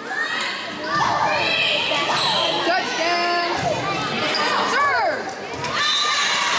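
Voices of volleyball players and spectators calling out and cheering, echoing in a school gymnasium, with thumps of the volleyball on hands and the hardwood floor.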